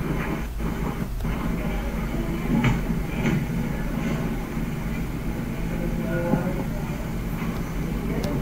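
Steady background rumble and hiss with a low hum, and faint voices in the background a few seconds in.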